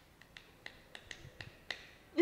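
One person lightly clapping their hands: about eight faint, unevenly spaced claps.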